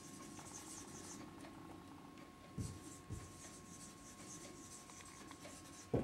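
Marker writing on a whiteboard: faint scratchy strokes, in a spell during the first second and another from about two and a half to four seconds in, with a couple of soft taps.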